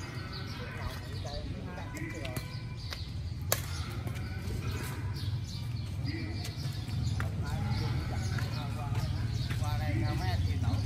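Badminton rackets hitting a shuttlecock in a rally: a few sharp pops, the loudest about three and a half seconds in. Under them run a steady low rumble and distant voices.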